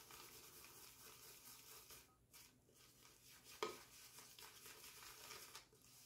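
Faint swishing of a synthetic shaving brush being swirled on shaving soap to build lather, with a single sharp tap about three and a half seconds in.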